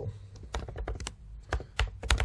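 Typing on a computer keyboard: an irregular, quick run of key clicks as a username and password are keyed in.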